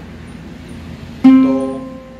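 A single ukulele note plucked about a second in, ringing and fading away: the first note, do (C), of a slowly played major scale.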